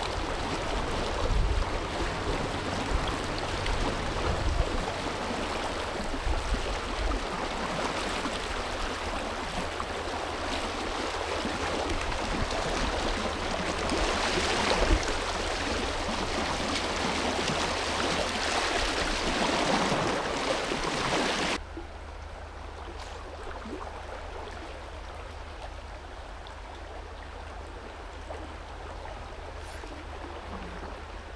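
Fast, high river water rushing and splashing around the wader, with a louder splash about halfway through as a brown trout thrashes in the landing net. About two-thirds of the way in it cuts suddenly to quieter flowing water.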